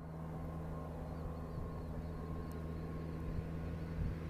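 An engine running steadily at an even speed, a low hum, with faint high chirps over it.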